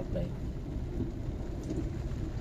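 Steady low rumble of a car's engine and road noise heard from inside the cabin as the car moves off in slow traffic.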